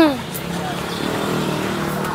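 A motor vehicle engine running steadily in the street, after a voice that trails off at the start.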